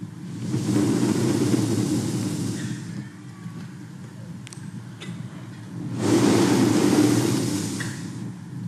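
Breath blown straight into a handheld microphone twice, each a long rushing blow of about two and a half seconds. The second blow starts about six seconds in.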